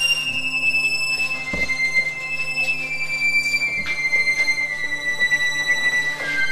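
A high, sustained whistle-like tone held on one pitch and stepping down a few times, over a steady low hum, with a couple of faint knocks.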